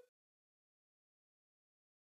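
Silence: the sound track is muted, with no audible sound at all.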